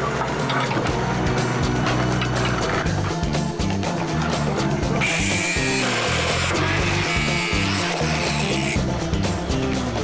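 Background music with a steady beat. From about halfway through, for nearly four seconds, a cordless angle grinder adds a high-pitched whine as it cuts metal.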